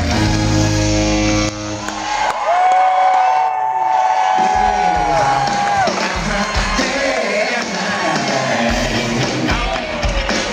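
Live funk/R&B band playing on stage. A sustained chord breaks off about a second and a half in, then a long held high note rings over the band for about three seconds before the full groove returns.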